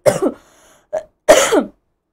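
A woman coughing into her hand: a cough at the start, a brief throat sound about a second in, and a loud cough just after.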